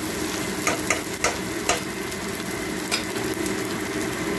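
Sliced onions sizzling steadily as they fry in hot oil in a pressure cooker pot, browning. A spatula stirs them, knocking and scraping against the pot several times.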